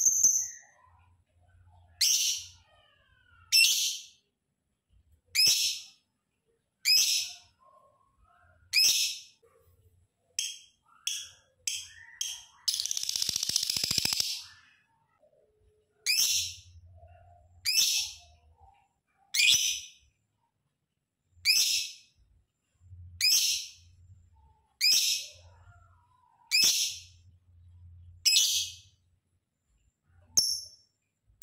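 Lovebird giving short, shrill, high-pitched calls, one about every one and a half to two seconds. About ten seconds in comes a quick run of shorter calls, then a longer, harsh chatter lasting a second or so, before the single calls resume.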